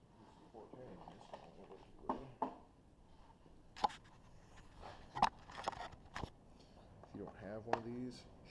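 Several sharp clicks and knocks of gear being handled on a shooting bench, coming between about four and six seconds in, with low indistinct talk before and after them.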